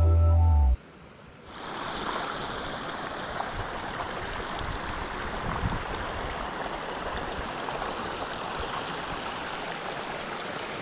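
A held chord of background music cuts off under a second in. After a brief quiet, the steady rush of a small snowmelt stream's running water fades in and carries on evenly.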